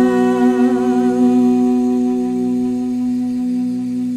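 A man's voice chanting a Quran recitation, holding one long note with a slight waver, slowly growing quieter.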